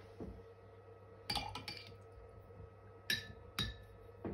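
Paintbrush clinking against a glass water jar: a quick cluster of light ringing clinks a little over a second in, then two more near the end.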